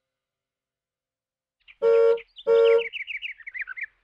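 After a silence, two short horn-like honks at the same pitch, the loudest sounds here, are followed by a quick run of about a dozen high, falling, bird-like chirps in the last second.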